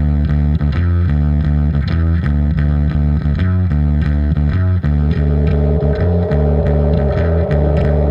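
Music: a distorted bass-guitar riff repeating in a steady loop. About five seconds in, a buzzing mid-range layer joins it.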